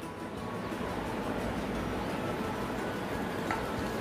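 Faint background music over steady room noise, with one light click near the end.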